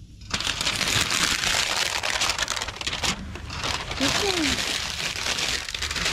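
Clear plastic wrapping being peeled off and crumpled, a loud continuous crinkling and crackling with a brief pause about halfway through.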